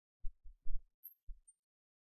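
Four soft, short low thumps within about a second, the third the strongest.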